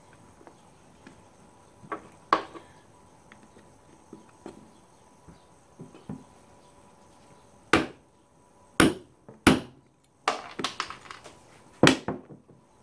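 Hand tools on an ATV's metal and plastic: a socket wrench and extension clicking and knocking as a fastener is worked on. Sharp single clicks come a few seconds apart, the loudest ones in the second half, with a quick run of them near the end.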